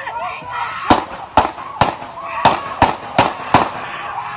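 Seven handgun shots fired in quick succession, about half a second apart, with a slightly longer gap after the third.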